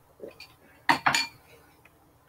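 A soft knock, then two sharp clinking knocks of hard objects in quick succession about a second in.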